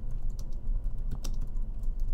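Typing on a computer keyboard: a quick, irregular run of keystrokes as a sentence is typed out.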